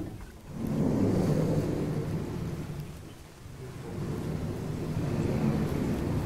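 Sliding chalkboard panels rumbling in their vertical tracks as they are pushed up and down, in two long runs: one from about half a second in to about three seconds, and a second from about three and a half seconds on.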